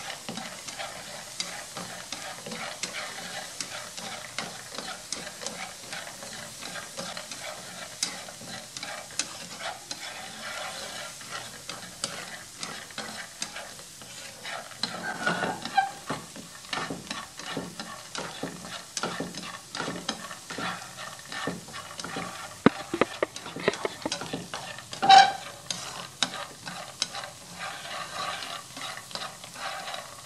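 Roasting peanuts with garlic being stirred with wooden chopsticks in a nonstick frying pan: steady rattling and scraping of the nuts against the pan as they are tossed so the sugar and seasoning coat them. One louder clack comes late on.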